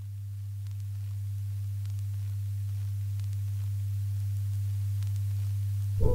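A single deep, steady synthesizer tone, slowly swelling in as music begins.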